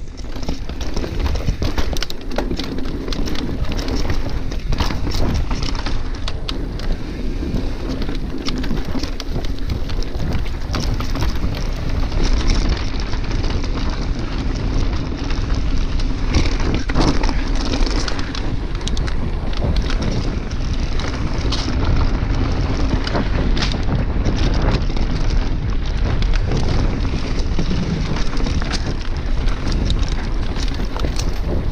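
Mountain bike ridden fast on dirt singletrack: tyres running over packed dirt and stones, with frequent clicks and rattles from the bike, under wind buffeting the helmet or handlebar camera's microphone.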